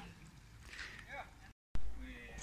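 Faint voices and outdoor background noise. Near the end the sound drops out completely for a moment, then comes back with a louder low rumble.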